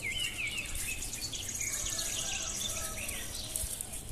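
Birds chirping in quick, short repeated calls, with a fast high-pitched trill in the middle.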